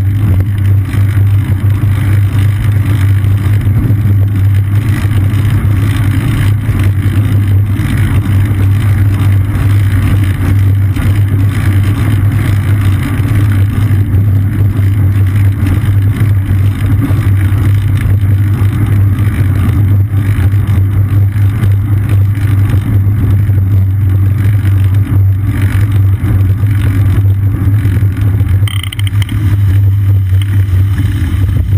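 Loud, steady low rumble of wind and road vibration picked up by a seat-mounted GoPro Hero 2 on a moving bicycle.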